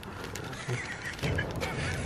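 Faint crinkling of a plastic bag as metal flake is tipped out of it into a tin of paint.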